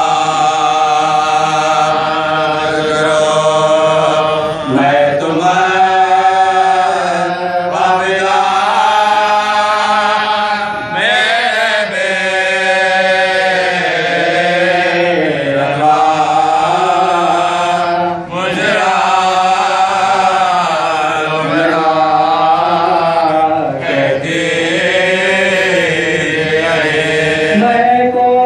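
Men reciting a noha, an unaccompanied Shia lament, in chant-like song: a lead reciter sings long, wavering held lines with another voice joining in. Phrases break briefly about every six or seven seconds.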